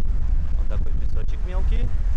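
Wind buffeting the camera microphone as a steady low rumble, with voices of other people on the beach in the second half.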